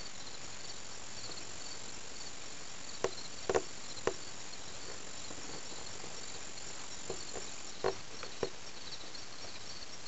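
Outdoor insect chorus of crickets: a steady pulsing chirp and a continuous high trill, the trill stopping about three-quarters of the way through. A few short knocks stand out, three close together around three to four seconds in and more near the end.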